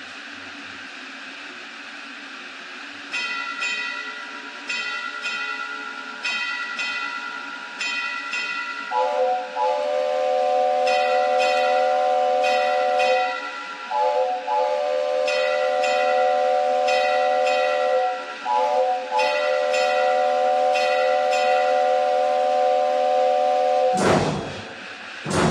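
A steam locomotive's hiss, then about three seconds in its bell starts ringing in steady strokes that each fade. From about nine seconds its multi-note chime whistle sounds three long blasts over the bell.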